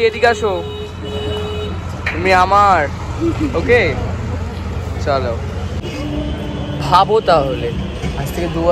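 Steady low rumble of street traffic, with voices speaking in short bursts over it.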